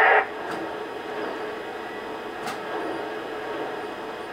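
Lionel O-gauge Southern Pacific GS-2 locomotive's onboard sound system playing its standing-idle sounds: a steady hiss with a couple of faint clicks, the engine not moving.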